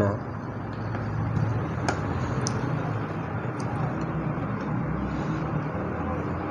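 Steady background noise like distant traffic, with a few faint metallic clicks from a screwdriver working a screw on a sewing machine's needle plate.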